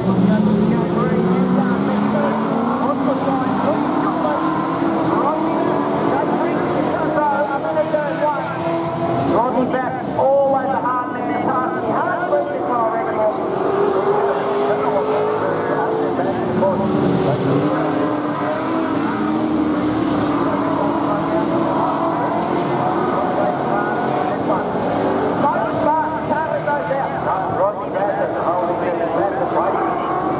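A pack of AMCA speedway cars racing on a dirt oval, several engines running hard at once, their pitches rising and falling as they lap.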